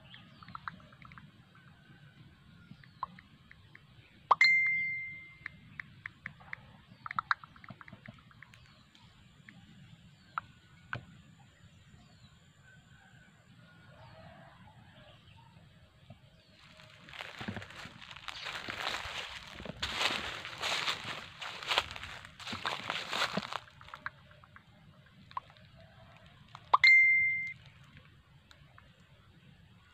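A short electronic ding, like a phone notification chime, sounds twice, each ringing out for about a second, once about four seconds in and again near the end. In between, about six seconds of crackling rustle over faint scattered clicks.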